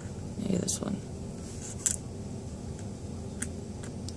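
A few faint, sharp clicks of metal tweezers trying and failing to grip a tiny rhinestone bow nail charm, over a low steady background hiss. A short murmur of a voice comes about half a second in.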